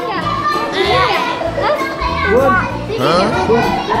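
Children's excited shouts and squeals at play, over background music with a steady beat.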